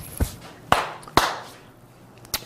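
Three sharp taps about half a second apart, the last two the loudest, each fading quickly.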